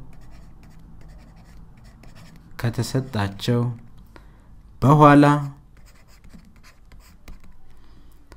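Faint scratching of handwriting strokes, a pen tip moving over a writing surface, broken by two short spoken words near the middle.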